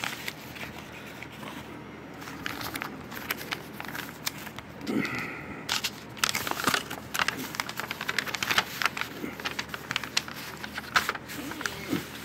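Paper envelope and folded paper being handled and opened: irregular crinkling and rustling of paper.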